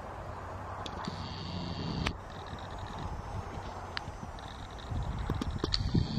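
A pony's hooves thudding softly on grass as it trots and then canters, over steady outdoor background noise with a few light clicks.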